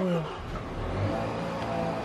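Car engine starting: a sudden rise in pitch as it fires, dropping quickly and settling into a steady idle.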